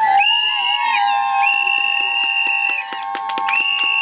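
Shrill, steady whistling tones: three long held high notes of about a second each over a lower tone that holds throughout, with light clicks beneath.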